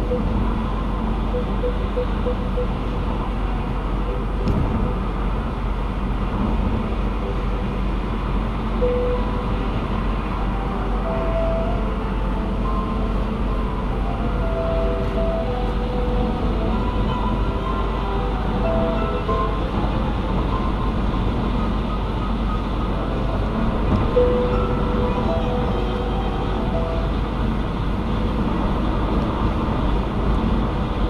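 Steady road and tyre noise of a car cruising at highway speed, heard from inside the cabin.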